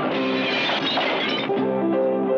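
Guitar-led film music, cut across for about the first second and a half by a crash of breaking glass; the music's notes return near the end.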